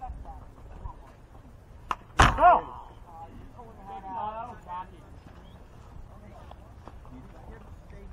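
A baseball pitch pops sharply into the catcher's mitt, followed at once by the home-plate umpire's loud shout calling a strike, falling in pitch. Fainter voices follow from the field.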